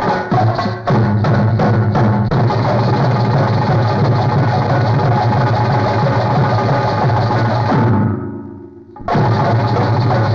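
Instrumental film dance music led by drums. Regular drum strokes for the first couple of seconds give way to a dense full-ensemble passage, which fades out about eight seconds in, leaves a gap of under a second, and then comes back in abruptly.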